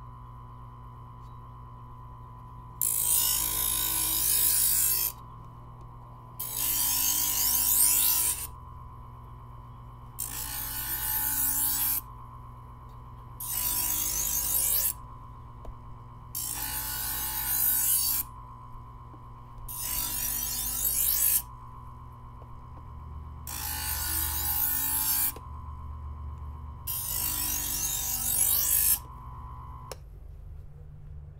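Presto electric knife sharpener running with a steady motor hum while a knife blade is drawn through its grinding slots eight times, each pass a loud rasping grind of about two seconds, about every three and a half seconds. These are extra passes to sharpen the edge.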